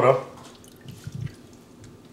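Water dripping, with a brief soft splash about a second in, as a freshly stretched ball of mozzarella is put into cold water.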